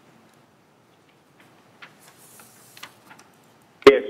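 A few faint, scattered clicks and ticks over quiet room tone, followed near the end by a man's voice starting to speak.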